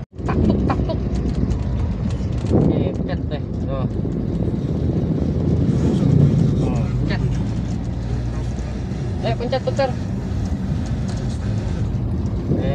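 Steady engine and road rumble inside a moving car's cabin, with brief snatches of voices now and then. The sound drops out for an instant right at the start.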